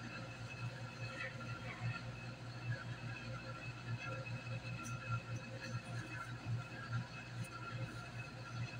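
Faint handling sounds of a foam floor-mat tile being picked up and lifted, a few soft rustles and bumps over a steady low hum.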